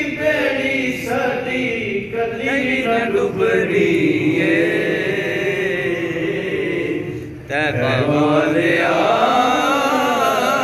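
A man chanting a naat unaccompanied into a microphone, in long, wavering drawn-out notes, with a short break for breath about seven and a half seconds in.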